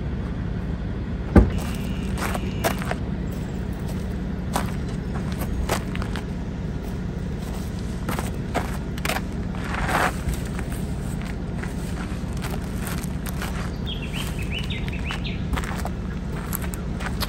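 Scattered knocks, thumps and footsteps as buckets of cut flowers and wooden crates are loaded into an SUV's boot, over a steady low rumble. A bird chirps several times near the end.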